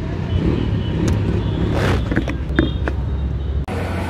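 Street traffic: motor vehicle engines running steadily nearby, with a few clicks and a brief whoosh of a passing vehicle about two seconds in. The sound cuts off suddenly near the end.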